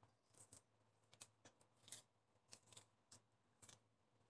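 Faint, crisp rustles and ticks of gloved fingers peeling the thin skin off ripe loquats by hand, about a dozen short sounds at irregular intervals.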